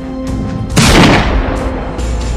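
A single loud bang about three-quarters of a second in, trailing off over about half a second, over steady soundtrack music.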